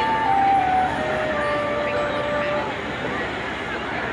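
Marching band holding a few soft, sustained high notes that step down in pitch, with a second note held above, then fading out about two and a half seconds in; crowd chatter from the stands runs underneath.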